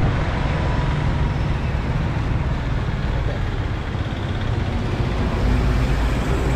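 Road traffic with a loaded goods truck passing close by, its engine running with a steady low rumble that grows a little louder near the end as the truck comes alongside.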